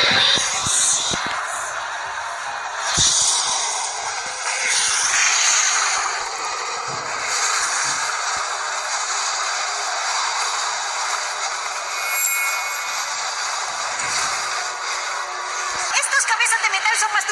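Animated film soundtrack: music mixed with action sound effects, with a few sharp low thumps in the first three seconds.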